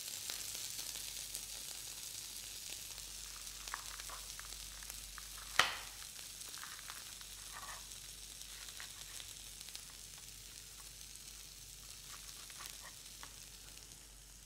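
Corn kernels sizzling in a small pan over a gas burner as they roast toward golden, a steady faint high hiss. A few light knife taps on a plate sound as lettuce is cut, with one sharper tap about five and a half seconds in.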